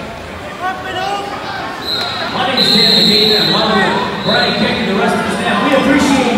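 Voices calling out in a large, echoing gymnasium during a wrestling bout, with a steady high-pitched tone that starts about two seconds in and lasts about two seconds.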